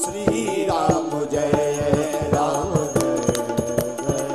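A man singing a Hindu devotional song into a microphone, accompanied by percussion keeping a steady beat.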